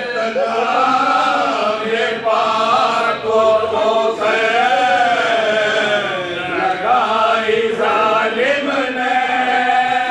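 A group of men chanting a marsiya, an Urdu elegy for Husain, together: a lead reciter with his chorus singing long held notes that slide slowly up and down.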